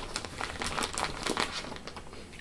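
A clear plastic bag crinkling and crackling as hands open it and handle the folded onesies packed inside.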